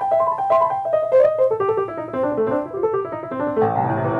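A 1940 Sohmer 5-foot baby grand piano, rebuilt with a new action, hammers and strings, being played: a quick run of single notes falling from the treble toward the middle, then a fuller passage with bass notes and chords entering near the end.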